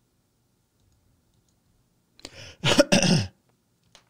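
A man coughing: two harsh coughs in quick succession about two and a half seconds in, after a couple of seconds of near silence.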